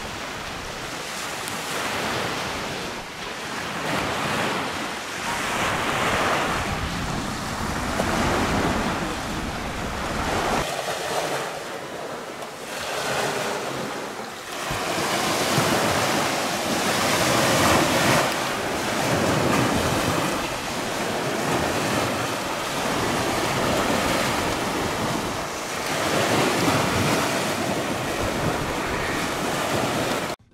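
Small waves breaking and washing up a sand beach, the wash swelling and fading every two to three seconds, with wind buffeting the microphone.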